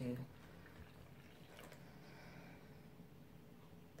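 Milk being poured from a glass into a bowl of flour, a faint soft liquid pour over quiet room tone.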